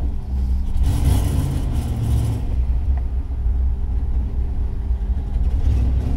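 1979 Ford Fairmont's small-block Ford V8 running at low speed, heard from inside the cabin as a steady low rumble; about a second in it picks up briefly as the car gets under way, then settles back.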